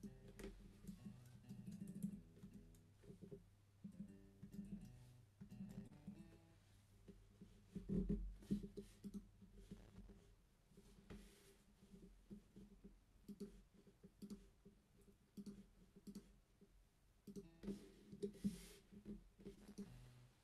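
Faint single guitar notes sounding one at a time, a few short notes in a row with pauses between, mixed with light clicks.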